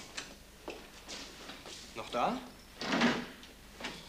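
Small clicks and knocks of things being handled at an office desk. A short vocal sound comes just after two seconds in, and a louder sliding thump about three seconds in, a desk drawer being shut.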